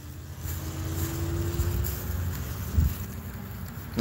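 Road traffic going by, with one vehicle's engine note rising slowly as it pulls away, over a low wind rumble on the microphone.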